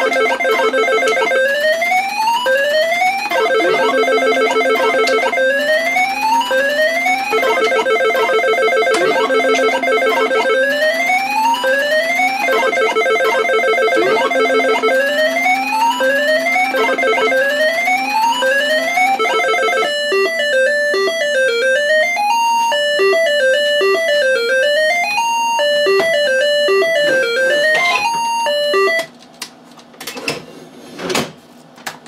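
Electronic beeping sound effects from a Universal Tropicana 7st pachislot machine: quick rising pitch sweeps repeating about twice a second, interleaved with rapid runs of beeps. About two-thirds of the way in they give way to a different simple beeping melody, which stops shortly before the end.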